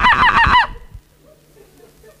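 A young man's voice imitating a monkey: a quick run of pitched "ooh-ooh" hoots, each rising and falling, that stops about two-thirds of a second in.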